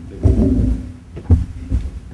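Low thuds and bumps picked up by a lectern microphone, with a muffled off-mic voice in the first second and a sharper knock just after the middle.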